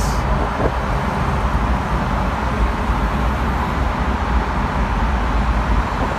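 Steady road and engine noise of a car driving through a road tunnel, heard from inside the car.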